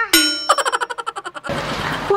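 A bright bell-like ding, then about a second of rapid ringing pulses, then a short hissing whoosh: a sound-effect sequence like those laid over a scene change.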